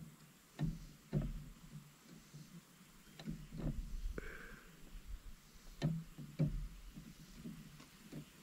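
Faint handling sounds of braided fishing line being wound tightly around a graphite rod blank to bind a broken tip, with a handful of light, irregularly spaced ticks and soft rustles.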